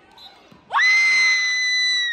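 A spectator's long, shrill scream during a wrestling match. It sweeps up in pitch, is held high for about a second and a half, then falls away.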